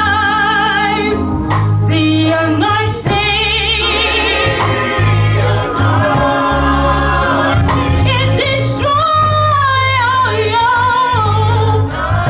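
Live gospel music: a woman sings the lead with strong vibrato through the church's sound system, over a bass line and drums.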